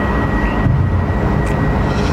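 Steady loud background noise, strongest in the low range, with a faint thin high whine running through it.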